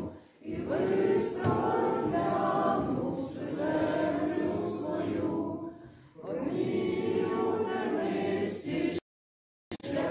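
A group of people singing together without accompaniment, in phrases with short breaths just after the start and about six seconds in. The sound cuts out abruptly about nine seconds in.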